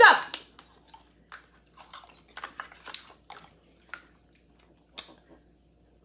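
Chocolate pudding being slurped and gulped down from a cup as fast as possible: a quick string of short wet smacks, sucks and swallows, with a sharp click about five seconds in.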